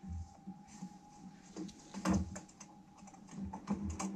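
Light, irregular clicks and taps close to the microphone, with a few duller knocks about halfway through, as someone handles the recording device, typing-like.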